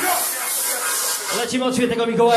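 Club dance music breaking down: the bass cuts out and a steady hissing noise takes over, then a voice comes in over the music about one and a half seconds in.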